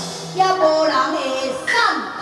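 Live Taiwanese opera singing into a microphone over instrumental accompaniment, the pitch sliding and bending, with a falling glide near the end.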